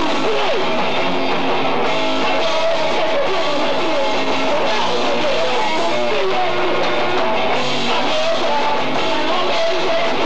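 Punk rock band playing live: electric guitars, bass and drums, loud and unbroken.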